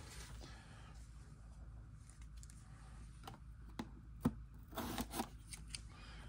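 Faint handling noise: a few short clicks and taps between about three and five seconds in, from a pair of scissors and a cardboard trading-card box being picked up and handled.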